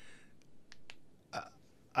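A man's pause between words: a few faint mouth clicks, then a short throat or breath noise about one and a half seconds in.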